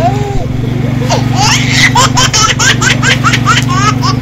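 High-pitched laughter, a quick run of short rising squeals about five a second starting about a second and a half in, over a steady low hum.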